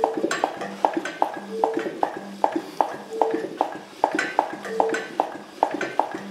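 Land Rover 300Tdi diesel engine, with no pistons in it, being turned over by hand on the crankshaft: a rattle and a regular knocking about three times a second, with short squeaky tones in between. The rattle is the engine's lifting frame, and the knocking comes from the injection pump.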